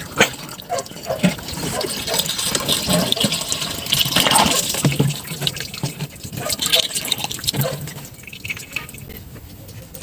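Water poured from a plastic bottle into a car radiator's filler neck, with irregular splashes and gurgles that fade near the end as the radiator fills up.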